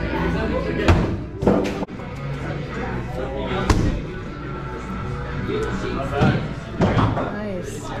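Medium-size throwing axes hitting plywood target boards: several sharp thuds, the sharpest a little under four seconds in, over background music and voices.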